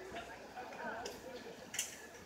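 Faint, indistinct background chatter of people's voices, with one short sharp click near the end.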